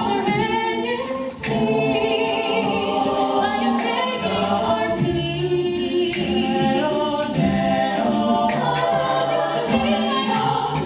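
Co-ed a cappella group singing live in harmony, a female soloist's lead voice over the group's backing vocals, with a brief break in the sound about a second in.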